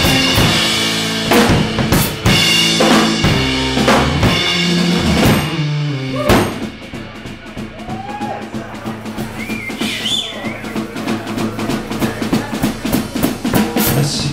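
A rock band plays live on drum kit, electric guitar and bass guitar, loud chords under heavy drum hits. About six seconds in, the band stops on a big hit and the drums carry on more quietly with fast, even strokes, with a few sparse guitar notes over them.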